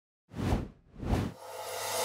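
Two quick whoosh sound effects about half a second apart, then a swelling rush of noise that builds into the start of a title-card transition.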